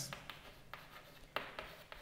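Chalk writing on a chalkboard: faint scratches and light taps of the chalk, with one sharper tap a little past halfway.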